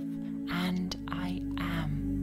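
Ambient music of steady held tones with a softly whispered voice over it, from about half a second in until just before the end.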